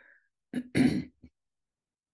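A woman clearing her throat once, a short rough burst about half a second in.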